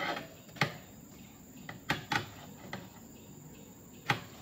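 About five irregular dull knocks as heavy oil palm fruit bunches are shifted and dropped against the wooden truck bed, over a steady high insect drone.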